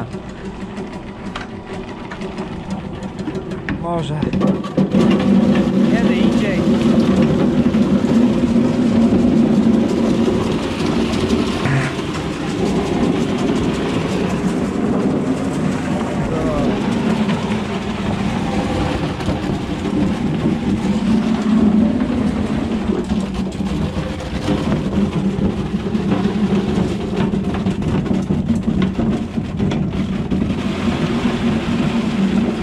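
Small electric turnip chopper running steadily, cutting turnips into shreds. It gets louder about five seconds in and stays loud.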